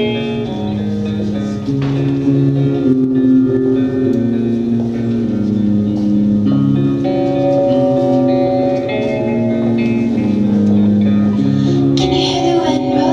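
Electric guitar playing a slow instrumental intro: ringing chords and held notes that change every second or two.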